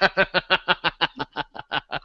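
A man laughing hard in a long run of short, even laughs, about seven a second, that slow down and fade toward the end.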